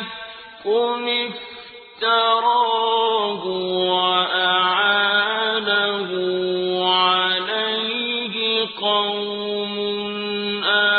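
A single voice chanting Quranic Arabic in melodic recitation, holding long notes with gliding turns of pitch. The voice is softer over the first two seconds, then fuller from about two seconds in.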